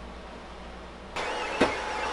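Workshop room tone: a steady low hum. A little over a second in it turns into a louder hiss, with a single short knock soon after.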